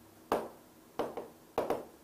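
Chalk writing on a chalkboard: about four sharp taps and short strokes as the chalk strikes the board, the last two close together.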